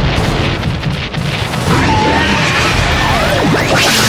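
Loud, dense crashing and booming noise mixed with music, starting suddenly and running on, with faint gliding tones in its second half.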